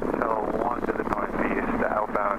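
Speech in the cockpit headset audio, cut off below and above like an intercom or radio, with steady R22 helicopter noise beneath it.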